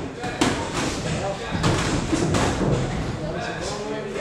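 Boxing gloves landing punches in sparring: a series of sharp thuds, the strongest about half a second in and about a second and a half in, with voices talking over them in a large, echoing hall.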